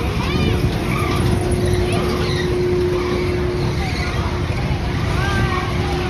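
Low, steady rumble of a spinning kiddie ride's machinery, with a steady hum that fades out partway through and returns near the end. Children's voices rise over it.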